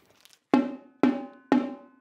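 Marching drum struck three times, evenly half a second apart, each stroke ringing out and fading: a count-off before the drumline plays the next rep.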